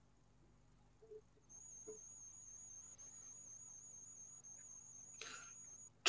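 Near silence on a video-call audio line, with a faint high-pitched whine that wavers slightly, coming in about a second and a half in and running almost to the end. A brief soft noise comes shortly before the end.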